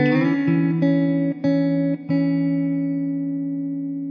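Background music on plucked guitar: a few notes picked in the first two seconds, then a chord left ringing and slowly fading.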